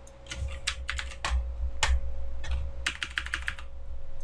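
Computer keyboard keys being pressed in irregular clusters, with a quick run of taps near the end, as Photoshop keyboard shortcuts are worked. A faint steady hum sits underneath.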